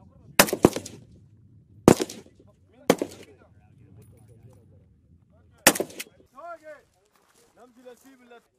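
Single shots from AK-pattern rifles, about six at uneven spacing, two of them in quick pairs, each followed by a short echo. A voice is heard briefly after the last shots.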